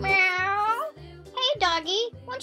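A person voicing a cat in a high-pitched voice, making two drawn-out meow-like calls, over children's background music with a steady beat.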